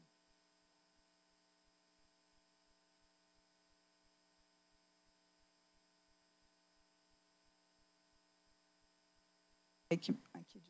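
Near silence: the wireless microphone has cut out, its battery running down, leaving only a faint steady electrical hum with a soft low tick about three times a second.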